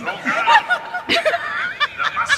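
Audience laughing and chuckling, many voices overlapping.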